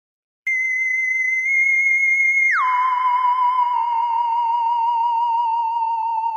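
Electronic theremin-like tone used as a transition sound: after a brief silence a steady high note starts about half a second in, then slides down about an octave after about two and a half seconds and carries on with a slow wavering vibrato.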